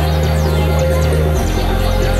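Electronic music with a deep sustained bass line that drops lower about one and a half seconds in. Short high chirps run over the top throughout.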